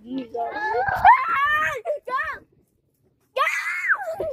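A young child screaming in high-pitched shrieks whose pitch swoops up and down for about two seconds, then, after a short pause, one more shriek falling in pitch near the end.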